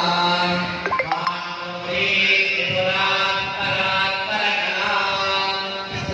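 Men's voices chanting Sanskrit Vedic mantras for a homa fire ritual in a steady, melodic recitation, with a few short clicks about a second in.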